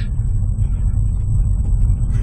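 Steady low rumble of a car driving along a snow-covered road, heard from inside the cabin.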